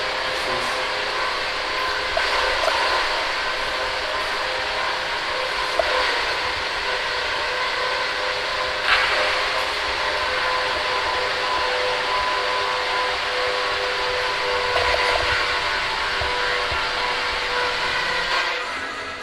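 Steady hiss of room noise with a faint steady hum under it, and a few faint knocks.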